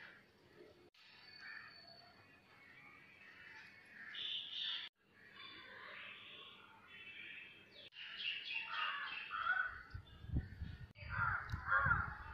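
Birds calling and chirping, with crows cawing among them, in short stretches broken by sudden cuts. A low rumble comes in near the end.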